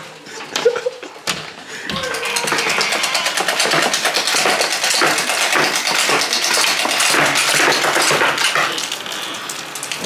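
A door handle and latch clicking as the door is opened, then heavy rain pattering on wet concrete, a dense steady hiss beginning about two seconds in.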